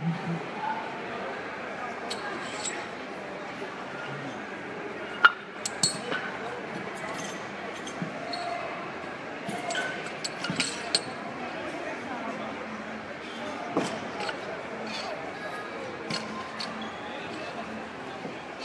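A barbell being reloaded: scattered sharp metallic clinks and clacks of Eleiko plates and collars being handled and slid onto the bar, the loudest about five seconds in, over a background murmur of voices.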